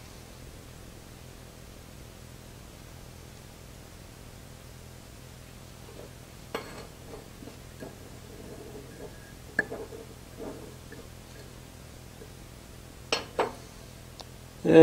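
A hand-held steel chisel giving a few light metallic clinks against the steel bench top, with two quick clinks close together near the end, over a low steady shop hum.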